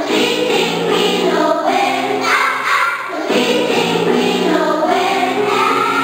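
Young children's choir singing, with a short break between phrases about three seconds in.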